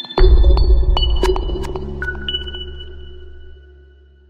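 Electronic logo sting: a deep bass hit about a quarter of a second in, with high ringing tones and sharp clicks over it. It fades away over about three seconds.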